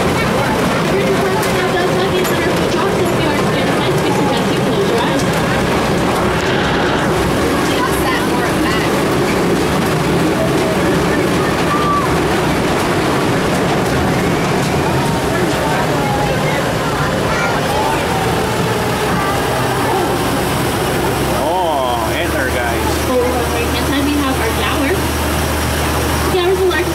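Indistinct voices over the steady running of an old tour tram's truck engine and road noise. Near the end the engine's low note grows stronger.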